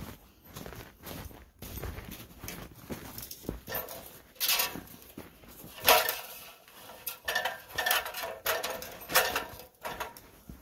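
Footsteps crunching in snow, then boots climbing an aluminium extension ladder: irregular metallic clanks and knocks on the rungs, several with a short ring, the loudest about halfway through and a run of them near the end.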